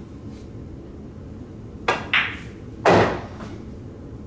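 A pool shot: the cue tip clicks against the cue ball, a bright clack follows a fraction of a second later as the cue ball strikes the object ball, and then comes the loudest sound, a duller knock with a short rattle as the object ball drops into the side pocket. The cue ball was stunned.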